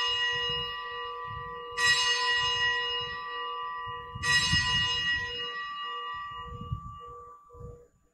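Altar bell rung at the elevation of the consecrated host: a stroke already ringing, then struck twice more about two and a half seconds apart, each ring fading slowly away.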